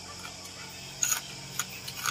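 Close-up eating sounds of balut: a few short wet clicks and smacks of chewing about a second in and again near the end, over a low steady hum.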